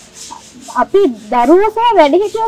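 A woman speaking, starting again about a second in after a short pause.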